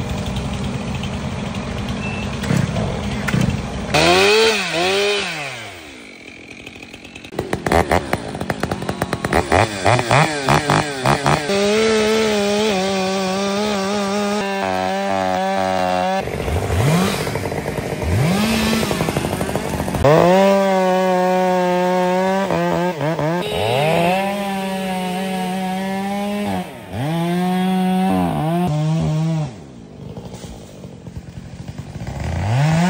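Two-stroke chainsaws, a Stihl among them, cutting through fallen tree trunks and limbs. The engine note climbs to a steady high pitch under throttle and drops back again, many times over.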